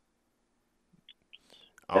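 A pause in a spoken conversation: near silence with a few faint soft sounds, then a man starts speaking just before the end.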